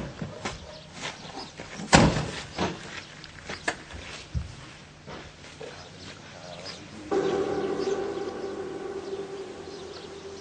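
A car door, the driver's door of an Opel Kadett convertible, slammed shut about two seconds in, followed by a few lighter knocks. From about seven seconds in, music with held chords starts.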